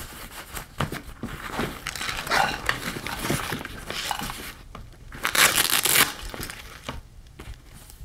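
Fabric of a Targus nylon laptop bag rustling and scraping as it is handled, turned over and its pockets opened, with a louder rasping burst about five and a half seconds in.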